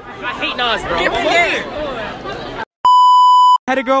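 Teenage voices chattering, then the sound cuts out and a loud, steady censor bleep plays for under a second before the sound cuts out again.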